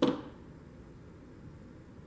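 A single sharp knock right at the start, fading away within half a second, then quiet room tone.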